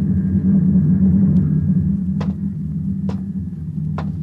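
Low, steady rumble of a radio-drama spaceship drive sound effect, swelling up within the first half second, with two sharp clicks about two and three seconds in.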